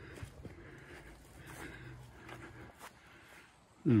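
Faint footsteps on wet ground, with a few soft clicks from the camera being handled as it is carried and turned.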